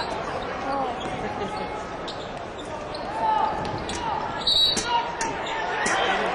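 Basketball game action on a hardwood court: a ball bouncing and sneakers squeaking in short chirps, over a steady arena crowd hum.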